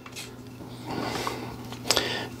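Handling noise as a small fluid head is fitted onto a tabletop tripod: a soft rubbing scrape about halfway through, then one sharp click near the end.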